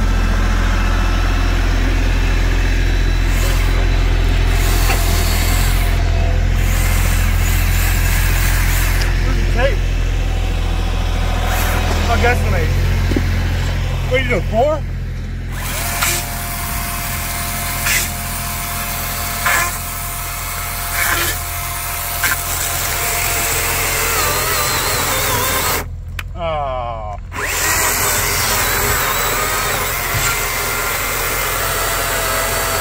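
A DeWalt 60-volt brushless battery chainsaw cutting through a large ash log, its motor whining in and out of the cut. A tractor engine idles underneath with a steady low hum.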